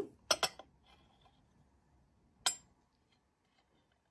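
Light clinks of a Le Creuset stoneware mug knocking against its stoneware saucer as it is handled: two quick clinks near the start and one more a little past halfway.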